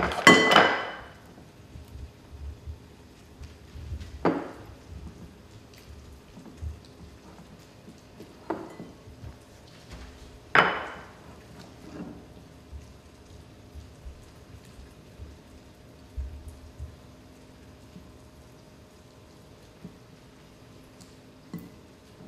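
Utensil clinking against a glass mixing bowl while egg noodles are tossed with butter: a few scattered sharp clinks, the loudest about half a second in and about ten seconds in, with quiet stretches between and a faint steady hum underneath.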